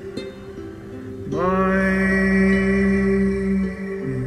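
Ukulele picked softly, then about a second in a voice scoops up into one long held wordless note lasting about two and a half seconds over the ukulele.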